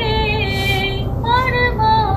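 Background song: a high voice singing long, sliding notes, with a steady low rumble underneath.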